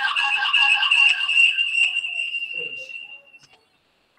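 Audio feedback whistle on an open video-call microphone: a steady high-pitched tone with fainter lower tones under it, fading away about three and a half seconds in.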